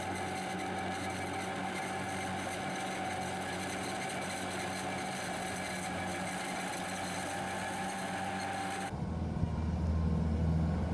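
Compact hillside tractor's engine running steadily while it pulls a rotary haymaking implement, with a steady whine over the hum. About nine seconds in the sound cuts to a louder, lower rumble of a skid-steer loader's engine.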